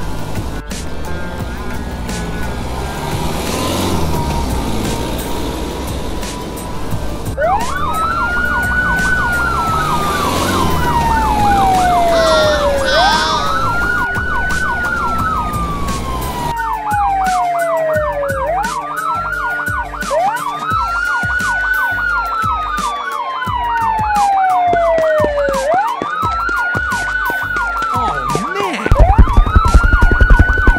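Police car siren: a wail that rises quickly and falls slowly, repeating about every five to six seconds, with a fast yelp over it, starting about seven seconds in. Before it, a car engine running; a loud low throbbing starts just before the end.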